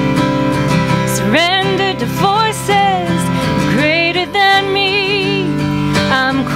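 A woman singing a slow song, holding notes with vibrato, to a plucked and strummed acoustic guitar accompaniment.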